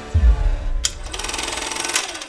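Trailer sound design: a deep bass boom that sinks in pitch. About a second in comes a sharp hit, then a fast, buzzing digital stutter that cuts off near the end.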